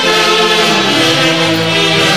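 Andean orquesta típica playing a tunantada: a section of saxophones and clarinets carrying the melody together in held notes that step from pitch to pitch, loud and steady.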